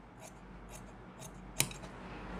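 Large tailor's shears snipping through fabric in a straight cut along the side of the piece: a few faint, sharp snips, the crispest about one and a half seconds in.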